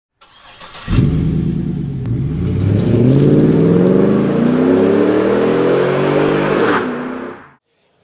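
A car engine revving, starting suddenly about a second in, its pitch climbing steadily for about six seconds before fading out quickly near the end.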